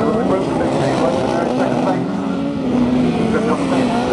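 Grass-track racing sidecar outfits running hard around the circuit, a steady engine note that wavers slightly, with a commentator's voice over it.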